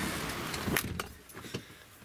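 A few light clicks and rattles inside a truck cab over a steady hiss that fades about a second in.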